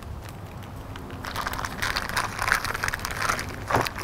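Thick blended marinade pouring from a blender jar into a plastic zip-top bag of short ribs, the bag crinkling as it is held open; the irregular pouring and crinkling start about a second in.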